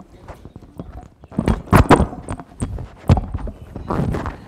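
Thumps and rustling of a clip-on lapel microphone being handled and fastened to a jacket, with a cluster of knocks about one and a half seconds in and another sharp knock about three seconds in.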